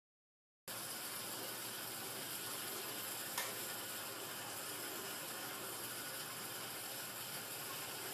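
Silence, then a steady even hiss of background noise cuts in abruptly just under a second in, with one faint click about three and a half seconds in.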